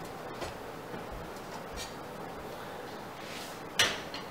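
A few faint clicks and one sharp knock just before the end, from a microwave's metal wall-mounting plate being handled and fixed against the wall.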